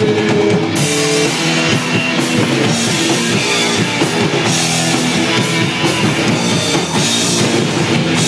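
Live rock band playing loud: electric guitars, electric bass and drum kit in a steady groove.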